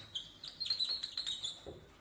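Marker pen squeaking on a whiteboard as words are written: a run of short, high squeaks in stroke after stroke, each at a slightly different pitch.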